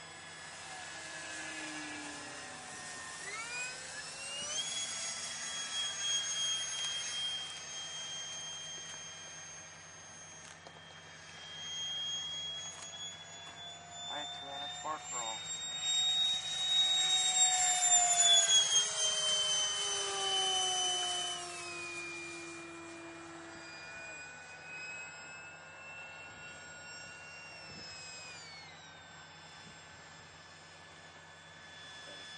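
Whine of electric RC model airplanes flying overhead, several tones at different pitches shifting as the throttles change, one rising sharply about four seconds in. One plane passes close, loudest well past the middle, its pitch falling as it goes by.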